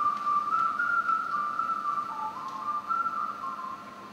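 Whistled melody of a recorded pop song, one wavering line stepping up and down in pitch, fading out steadily as the track ends.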